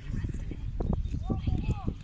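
Children's voices calling out on a football pitch, with a few short rising-and-falling shouts in the second half, over a steady low rumble.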